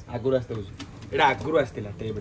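A bird cooing in low, soft calls, with a man's quiet voice.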